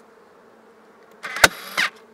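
Cordless staple gun firing a staple: about a second and a quarter in, a short burst of mechanical noise with one sharp crack as the staple drives, lasting about half a second. A faint steady hum of honey bees runs underneath.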